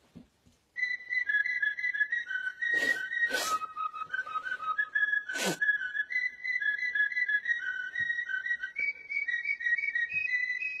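A whistled melody of short, stepped notes, starting just under a second in. It is crossed by three brief rushing noises about three, three and a half and five and a half seconds in, the last one sweeping downward.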